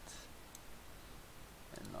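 Faint computer mouse clicks: a single sharp click about half a second in and a few light ones near the end.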